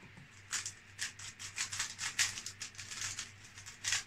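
Plastic 3x3 speedcube being turned quickly by hand while it is scrambled, its layers clacking in a fast, uneven run of sharp clicks that starts about half a second in and stops just before the end.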